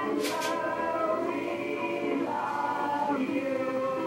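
A group of men and women singing a devotional love song together in Vietnamese, in chorus, holding long notes.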